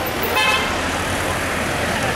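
City street traffic noise: a steady hiss of passing cars and engines, with a brief high-pitched toot of a vehicle horn about half a second in.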